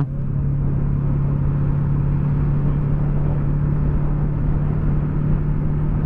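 Yamaha MT-03 motorcycle engine running at a steady cruising speed, one constant drone that holds the same pitch throughout, under a haze of wind and road noise at the rider's camera.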